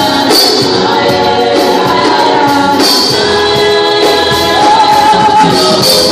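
Live gospel worship music: a group of singers with a band of drum kit and electric keyboard, loud and steady, with bright percussion accents every few seconds.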